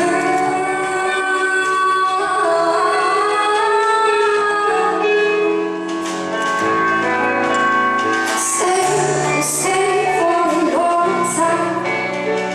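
Live band music: a woman singing a pop ballad over electric guitar and bass guitar, with cymbal hits in the second half.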